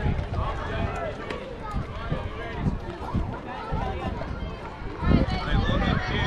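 Indistinct voices of people talking, with a steady low rumble of wind on the microphone.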